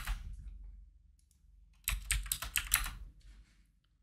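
Computer keyboard keystrokes: a couple of clicks right at the start, then a quick run of typing about two seconds in, entering a scale value.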